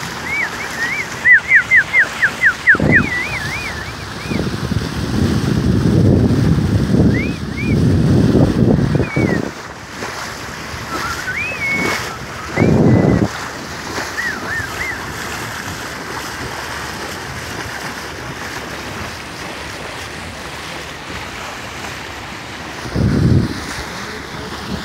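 Quick rising-and-falling whistles, a rapid string in the first few seconds and scattered ones later, over the steady wash of sea and wind. Loud low rushes of water and wind on the microphone come in surges, the longest about a third of the way in and shorter ones in the middle and near the end.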